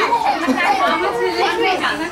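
Several people talking over one another at once: overlapping party chatter, no single voice clear.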